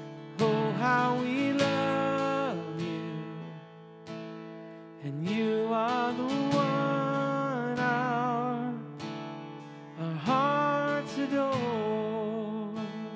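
Live acoustic worship music: a man singing slow, held phrases with vibrato over a strummed acoustic guitar. There are three phrases, with short pauses between them.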